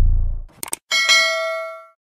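Subscribe-animation sound effects: a low bass tone fades out, then a quick double mouse click and a bright notification-bell ding that rings and fades over about a second.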